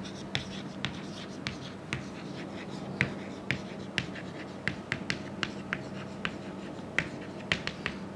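Chalk tapping and scraping on a chalkboard as words are written out by hand. It makes a string of sharp, irregular clicks, about three a second, with the loudest taps about three and seven seconds in.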